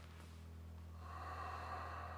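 A person's long breath out through the nose, starting about a second in, over faint orchestral background music holding a low note.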